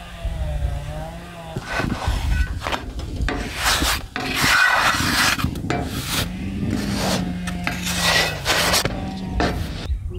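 A wooden spatula scraping and sliding over a bazlama flatbread on a hot metal griddle as the bread is turned and worked, in a run of rough, irregular scraping strokes starting about two seconds in.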